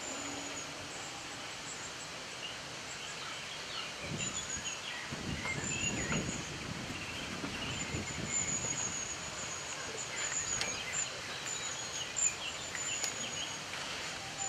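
Small birds chirping, with a high chirp repeated in quick runs. For several seconds in the middle there is irregular rustling and crunching from a European beaver feeding among the reeds, and a few sharp clicks come near the end.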